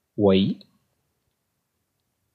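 A voice saying a single word, "Y", then near silence.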